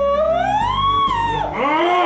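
A woman's long wailing scream that rises in pitch, holds and falls away, followed near the end by overlapping cries, over steady background music.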